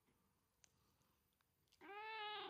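Near silence with a faint tick, then near the end a house cat starts a long meow that rises and falls in pitch, calling for attention as it comes up to its owner's face.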